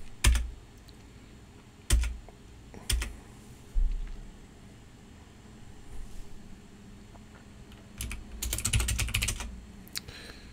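Computer keyboard keys being pressed: a few single keystrokes in the first three seconds and a low thump just before the four-second mark, then a quick run of typing about eight seconds in.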